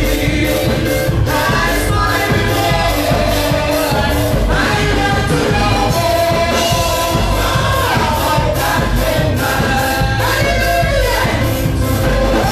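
Gospel music: several voices singing together over a steady beat and heavy bass.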